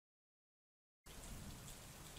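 Near silence: dead silence for about the first second, then a faint steady hiss of recording room tone comes in.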